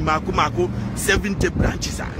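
A man talking, with a low hum of street traffic underneath.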